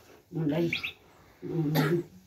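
A woman chanting a ritual text from a book in a flat, level-pitched monotone, in two short phrases with a pause between them.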